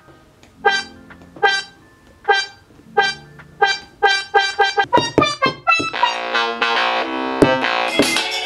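Electronic keyboard-like notes triggered by Specdrums rings tapped on the coloured playpad. Single short notes come about one a second, then faster from about halfway, ending in a dense run of overlapping notes over the last two seconds.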